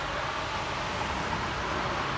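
Steady, even background hiss of distant road traffic.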